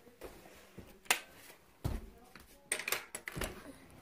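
Scattered clicks, knocks and rubbing from a phone being handled close to its own microphone, with a few sharper knocks about a second in and again between two and three and a half seconds.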